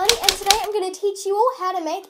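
A rapid, even run of typewriter key clicks that stops just over half a second in, over a girl talking. The clicks are a typing sound effect for an on-screen caption.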